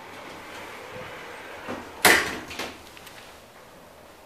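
Otis 2000 elevator's sliding doors closing after a floor is selected, shutting with a loud thump about two seconds in.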